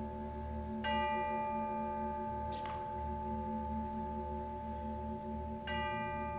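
Concert band holding soft, sustained chords, with a ringing bell struck about a second in and again near the end.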